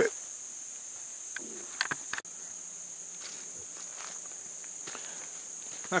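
Steady high-pitched chorus of crickets, with a few short knocks or steps about two seconds in and a brief break in the sound just after.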